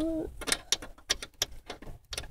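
A small screw being turned back into a 1988 Honda Civic's ignition switch on the steering column: a quick, irregular run of sharp clicks and ticks from the screw and tool.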